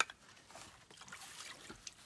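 Faint wet scraping and squishing as straw-rich clay plaster is scooped from a plastic tub onto a wooden board, with a sharp knock at the start and a few light knocks of the tools.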